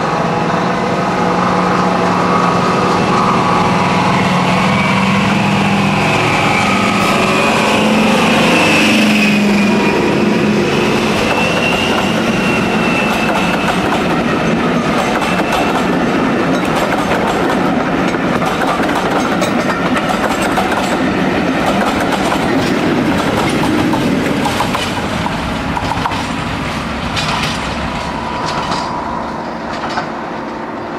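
Deltic diesel locomotive passing at speed with a train of coaches. Its engines' deep note and a high whine drop in pitch as it goes by about eight seconds in. The wheels then clatter over the rail joints as the coaches pass, and near the end a second diesel locomotive at the rear of the train is heard running.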